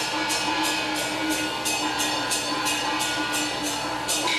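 Taiwanese opera (gezaixi) instrumental music: a steady percussion beat of about three sharp strokes a second over a held instrumental tone.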